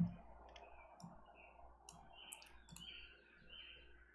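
A few faint, irregular clicks from a computer mouse.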